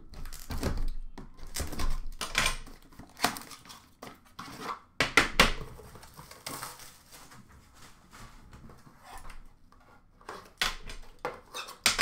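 A metal hockey-card tin being slid out of its cardboard box and set down on a glass counter: rustling with scattered clicks and knocks. The handling is busiest in the first half, goes quiet, then picks up again near the end.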